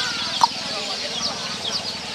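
Birds calling outdoors: a rapid series of short, high, falling chirps, with a single lower call about half a second in.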